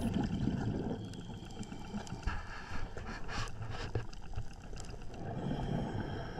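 Faint, muffled underwater ambience: a low steady rumble with scattered short clicks and crackles.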